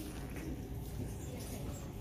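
Faint shop background: a low steady hum with a few faint, scattered small noises.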